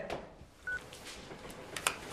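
A single short, high electronic beep from a mobile phone, then a faint room hush and one sharp click near the end.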